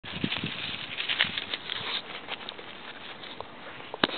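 A puppy's paws crunching and rustling through dry fallen leaves: a dense run of crackles for the first two seconds, then only scattered ones.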